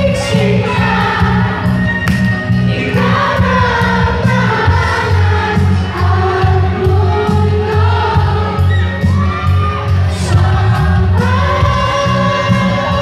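Man singing live into a handheld microphone over a backing track with a steady bass beat, both played through a stage PA.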